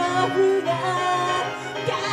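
Idol pop song performed live: a woman's voice singing held, slightly wavering notes over a full backing band track.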